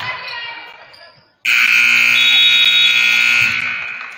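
Gymnasium scoreboard horn sounding loud and steady for about two seconds as the game clock reaches zero, signalling the end of the first quarter, then echoing in the hall after it cuts off. Before it, voices and court noise.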